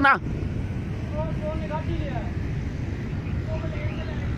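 Steady low outdoor rumble, with a faint distant voice calling out about a second in and again briefly near the end.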